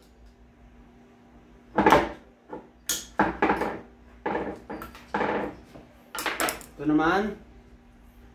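Metal transmission parts and tools clinking and knocking on a metal workbench as the automatic transmission's valve body and wiring harness are handled: about ten separate knocks, several in quick runs, starting about two seconds in.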